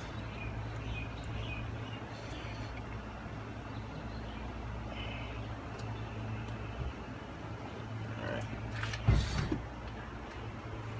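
Car engine idling, a steady low hum throughout.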